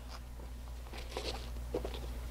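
Faint rustling and light handling noises of hands closing a fabric art-supply carrying case, with a steady low hum underneath.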